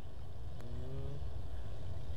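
A distant motor running: a low steady rumble, with a faint slightly rising tone for about half a second near the middle.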